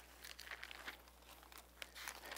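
Faint rustling of thin Bible pages being turned by hand, a few short soft crinkles.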